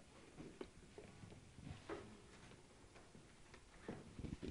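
Near silence with a few faint, soft ticks and rustles from a hand stirring folded paper slips in a clear plastic draw box.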